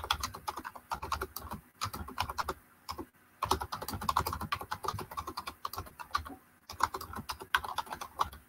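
Typing on a computer keyboard: rapid runs of key clicks broken by a few brief pauses.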